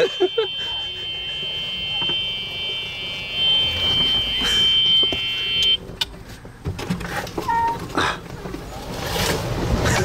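Golf cart moving along a paved path: a low running hum with a steady high-pitched whine over it. The whine cuts off suddenly about six seconds in, leaving quieter rolling and rattling noise.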